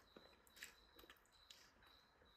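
Near silence with a few faint, soft clicks of people chewing a mouthful of food.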